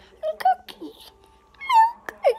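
A child's voice making short, high-pitched wordless sounds, with a longer high squeal near the end.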